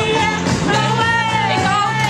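Rock music with a group of young women singing along loudly over a steady bass line.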